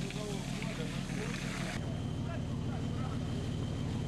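Ship's engine running steadily on deck, a low drone, with faint voices over it in the first couple of seconds.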